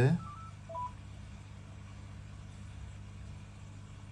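A quick run of four or five short electronic beeps at different pitches in the first second, over a steady low hum.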